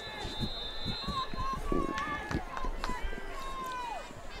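Football stadium crowd ambience: scattered voices and shouts over a noisy background, with a thin steady high tone over the first second and a half and a held call that falls in pitch near the end.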